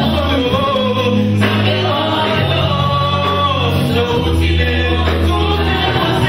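Live band music with singing over amplified instruments, including electric guitar and a deep bass line that changes note every second or so.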